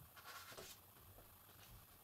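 Near silence, with a faint scratchy rustle of a card being slid across a cloth-covered table, mostly in the first second.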